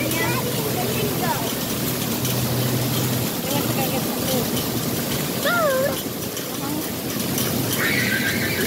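Steady hiss of water spraying and falling from a splash-pad play structure, with children's voices calling over it.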